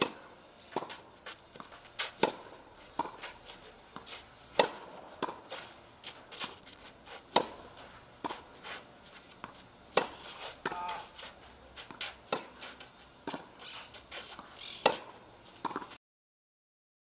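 Tennis rally on a clay court: sharp, loud hits of racket strings on the ball about every two and a half seconds, with many softer knocks between them.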